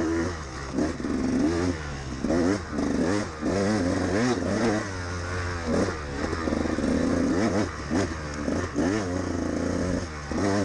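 2013 KTM 200XC-W two-stroke dirt bike engine revving hard and falling back again and again, its pitch rising and dropping roughly once a second as the rider works the throttle and gears on a tight trail.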